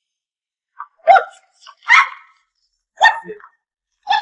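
Three loud, short, dog-like barks, about a second apart.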